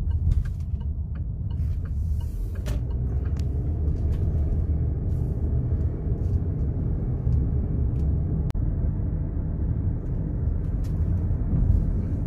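Road and engine noise heard inside a moving car's cabin: a steady low rumble, with a few light clicks.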